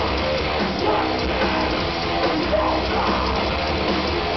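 Heavy metal band playing live: distorted electric guitars over bass and drums, loud and continuous.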